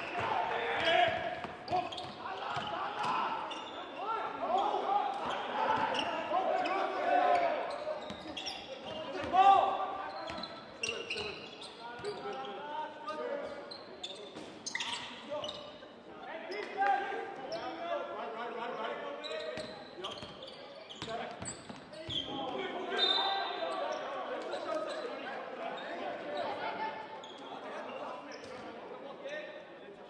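Basketball game court sound in a gym hall: a ball bouncing on the hardwood floor with repeated sharp knocks, and indistinct voices of players and spectators echoing in the hall.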